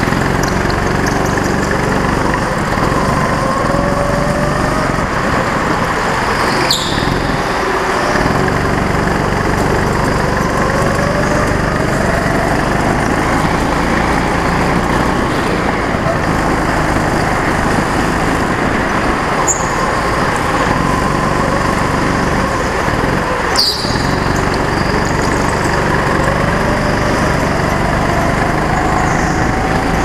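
Go-kart engine running at speed, heard from on board, its pitch climbing gradually over several seconds and dropping back twice, each drop marked by a sharp knock.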